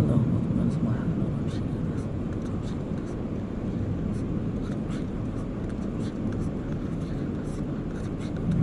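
Muffled, steady low rumble of background noise with faint, indistinct voices and a few light clicks.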